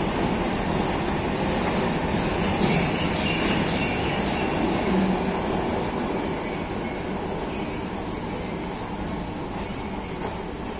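Steady rumble of a train running through a railway station, with a faint high wheel squeal a few seconds in. The rumble eases slightly in the second half.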